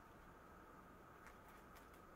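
Near silence: room tone with a faint steady hum and a couple of faint ticks.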